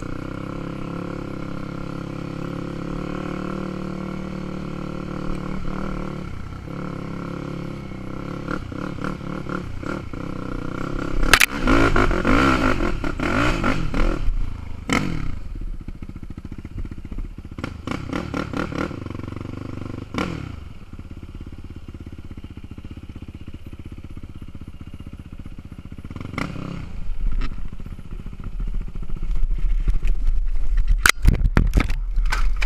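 Sport quad's single engine running along a rough dirt trail, revved hard in bursts that rise and fall, loudest about a dozen seconds in and again just before the end. Knocks and clatter come from the machine jolting over bumps.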